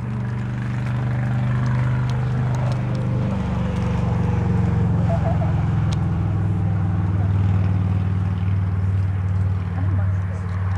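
A motor engine running steadily with a low hum, loud enough to cover the arena sounds; its pitch drifts slightly lower about halfway through.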